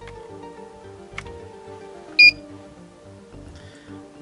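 Background music with steady tones, and about two seconds in a single short, high electronic beep, the loudest sound, as a USB cable connects the quadcopter's flight controller to a laptop.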